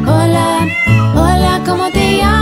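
Children's song music with meowing over it: pitched mews that glide up and down over a steady backing.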